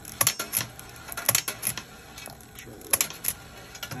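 Sharp metallic clacks from a 1939 ABT Fire and Smoke penny arcade game: its spring-powered target pistol firing steel balls into the metal cabinet, the clacks falling in pairs about a third of a second apart, three times. The shots miss the targets.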